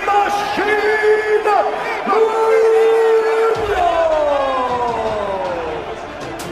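A man's voice shouting in long, drawn-out calls over crowd noise. The last call falls steadily in pitch over about two seconds.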